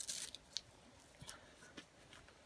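A short hiss at the start, then a few faint, brief scuffs and clicks of someone seated on dry leaves handling a climbing shoe at his feet.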